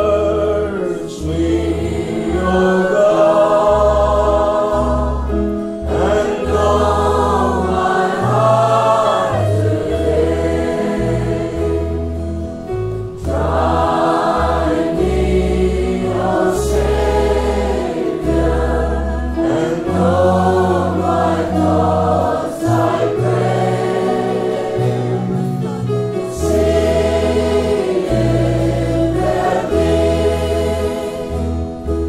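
Worship music: a choir singing a slow Christian song over instrumental accompaniment with sustained low bass notes.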